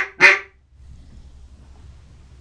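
The closing notes of a comeback call blown on a duck call: two short, loud notes in the first half second, cut off sharply, then faint room tone. A comeback call is a quick, urgent run of five to seven notes used to turn ducks that have flown past.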